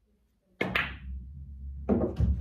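A pool cue strikes the cue ball about half a second in with a sharp click, followed by a low rumble of balls rolling on the table's cloth and another sharp ball clack with a few smaller knocks near the end.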